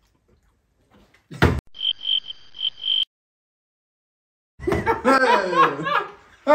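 A plastic bottle part-filled with liquid lands on a table with a single sharp knock. It is followed by a high pulsing beep that cuts off abruptly, then voices calling out.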